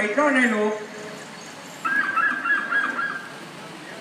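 A performer's voice over the stage PA sings out the end of a drawn-out, rising-and-falling line in the first second. After a pause comes about a second and a half of a quick run of high, rapidly repeated notes.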